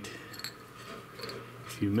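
A steady low hum with a few faint clicks, then a man's voice starting near the end.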